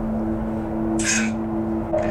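A steady low hum on two pitches, with one short breathy hiss about a second in.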